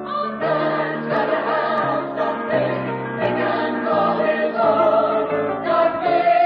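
A choir singing in full harmony, holding chords that change every half second or so while the low voices step downward, and swelling louder in the second half.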